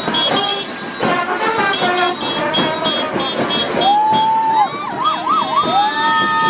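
Parade band music, then from about four seconds in a siren that rises, wails up and down several times, and settles into a steady held tone.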